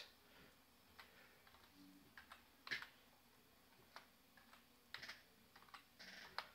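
Near silence with a few faint, scattered clicks of keys being pressed on a computer keyboard.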